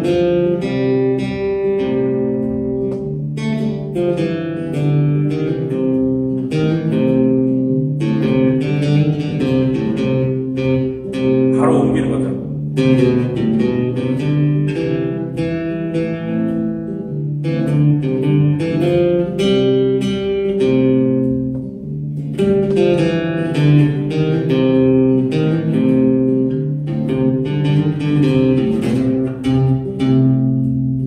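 Acoustic-electric guitar playing an improvised single-note lead on the C major scale, jumping between octave positions, over a sustained chord accompaniment. There is a brief scrape along the strings about twelve seconds in.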